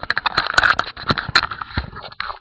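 Handling noise from a webcam being picked up and moved: fingers rubbing and knocking against it close to the microphone, a rapid, irregular series of clicks and scrapes.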